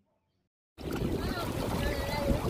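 Silence, then about three quarters of a second in, outdoor riverside sound cuts in: wind buffeting the microphone over moving shallow river water, with people's voices faintly in the background.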